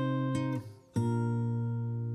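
Music of strummed guitar chords ringing out, with a new chord struck about a second in after a short dip in level.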